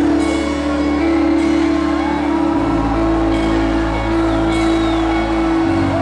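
Live worship band playing an instrumental passage without vocals: sustained chords held over a low bass note that shifts about halfway through and again near the end.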